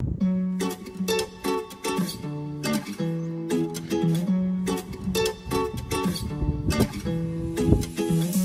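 Instrumental background music: an acoustic guitar plucking a steady run of notes.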